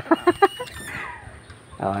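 Long breaker bar working a front wheel lug nut: a quick run of metal clicks, then a short falling squeak.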